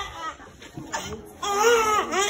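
Infant crying in short high wails: a dip early on, then a fresh cry rising from about one and a half seconds in. The crying comes right after the baby's vaccination injection.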